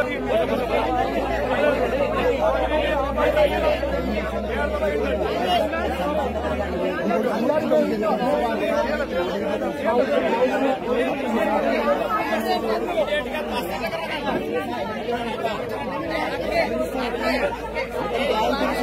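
A crowd of many people talking at once, a dense, steady babble of overlapping voices. A low steady hum runs under it for the first seven seconds or so and then stops.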